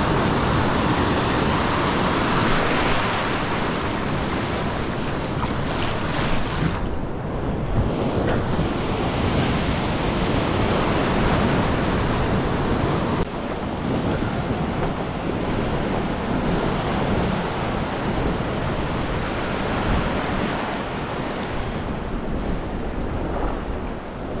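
Small ocean waves breaking and washing up the beach in a steady rushing hiss, with wind buffeting the microphone. The sound changes abruptly twice, at about seven and thirteen seconds in.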